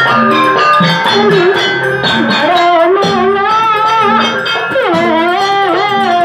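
Banyuwangi gandrung ensemble music accompanying the dance: steady drum and metal gong-chime strokes, joined about halfway by a melody line that slides and wavers in pitch.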